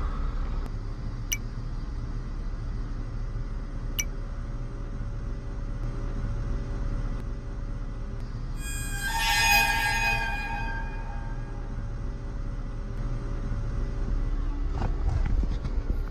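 Horror-film underscore: a low, steady drone with a shrill, many-toned stinger that swells up about nine seconds in and fades over about two seconds. Two faint ticks come in the first few seconds.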